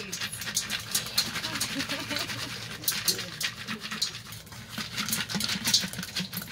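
Dried bottle gourd shaken by hand, its loose dry seeds rattling against the hard shell and spilling into a stainless steel bowl as a rapid, irregular patter of clicks.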